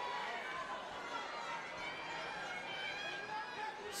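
Arena crowd murmur: a steady hum of many indistinct voices, with scattered faint shouts.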